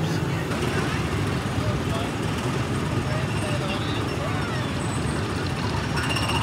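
Small gasoline engines of go-kart-style ride cars running in a steady drone, with faint voices of people around the track.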